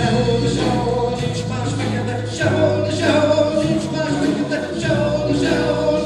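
Live folk-rock band playing with a children's choir singing, over long held low bass notes that change pitch every second or so.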